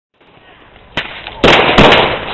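Loud bangs: a sharp crack about a second in, then two louder bangs in quick succession about half a second later.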